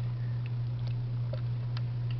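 A steady low electrical hum, with a few faint scattered clicks.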